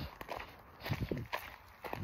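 Footsteps of a person walking on a paved trail: a few soft, separate steps.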